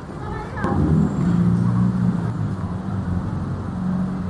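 A motor vehicle's engine running as a low, steady hum that rises about half a second in, heard amid street ambience with people's voices.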